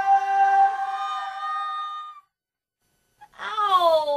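Multitracked female vocals hold a sustained chord, stacked like a choir, and cut off suddenly about two seconds in. After a second of silence, a single female voice sings a steep downward slide in pitch.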